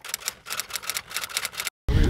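Typewriter key clicks used as a sound effect: a quick, uneven run of sharp taps as title text types onto the screen.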